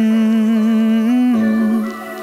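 Song intro: a long held hummed note with a wavering vibrato. It steps up briefly a little after a second in, drops back, and fades near the end.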